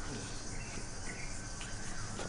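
Steady high-pitched insect chirping in the outdoor background, with no speech over it.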